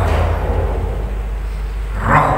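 A steady low hum with fainter background noise, with no voice over it.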